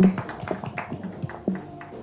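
Music with plucked-string notes, each fading after it is struck, with a few sharp hand claps near the start.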